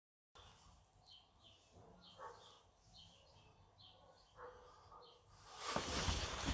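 Quiet room with a small bird chirping faintly and repeatedly outside. Near the end, louder rustling and knocks from a person moving close to the microphone.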